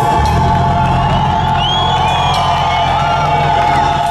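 Live heavy metal band playing a held chord over a steady bass, with the crowd cheering and whooping over it through the middle.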